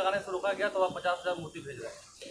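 A man speaking into press-conference microphones, his words trailing off over the first second and a half, then a brief lull.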